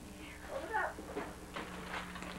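Faint voices in a room, with one short high call that rises and falls a little under a second in.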